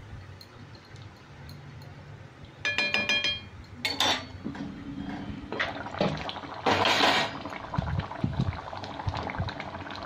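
A metal utensil clinks against the cooking pan with a brief ringing tone about three seconds in, followed by a knock about a second later. After that the prawn and potato curry bubbles as it simmers in the pan.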